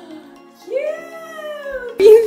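A woman's long, high-pitched excited 'ohh' cry, its pitch rising and then slowly falling for more than a second, over background music.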